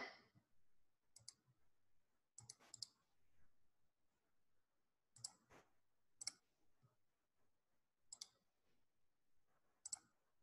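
Near silence with a handful of faint, short clicks at irregular spacing, six or so over the stretch.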